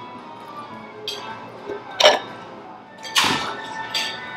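Background music with a metal fork clinking on a china plate: a light tap about a second in and a sharp clink about two seconds in, then a short hissy breath or scrape a little after three seconds.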